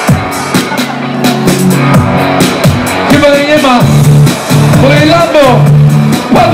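Live hip-hop through a concert PA: a beat with a heavy bass line that moves between held notes, and a voice on the microphone over it.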